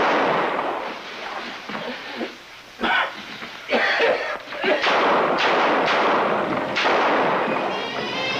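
Handgun shots fired in a small room: the loud rushing tail of one shot at the start, then about five more shots at uneven intervals over the next few seconds, each trailing off in a long noisy decay.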